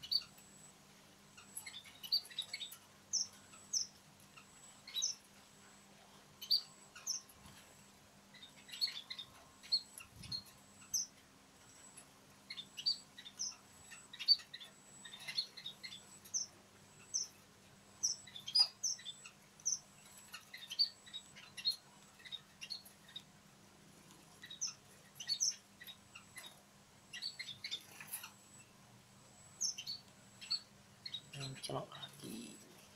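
Small aviary finches, munias among them, giving short high chirps in a steady scatter, about one or two a second.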